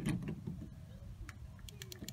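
Faint, scattered light clicks of a hand handling a plastic Ford oval tailgate emblem as it is lined up on its bezel, over a low background rumble.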